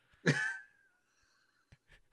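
A single short, throaty vocal burst from a man, about a quarter second in, trailing off into a thin fading tone.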